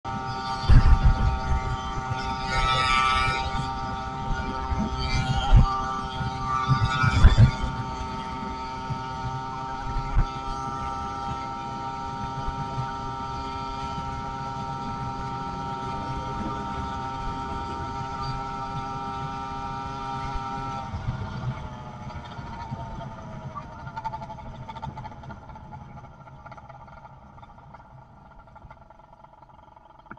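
110cc two-stroke motorized-bicycle engine running at a steady speed, with wind buffeting the microphone in the first several seconds. About 21 seconds in, its pitch falls and the sound fades as the engine slows down.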